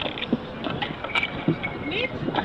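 Irregular sharp steps and shoe scuffs on stone paving, several a second, with people talking in the background.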